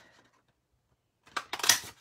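A gap of near silence, then about a second and a half in a brief burst of crisp rustling and tapping as small cardstock daisy cut-outs are handled and laid down.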